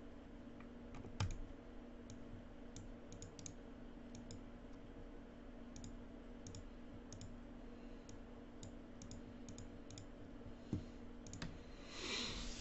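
Scattered, irregular computer mouse and keyboard clicks, faint, with a louder click about a second in and another near the end, over a faint steady hum.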